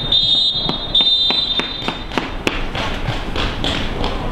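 Referee's whistle giving the last two of three long blasts, the final-whistle signal for the end of the match. Scattered sharp knocks follow over the next couple of seconds.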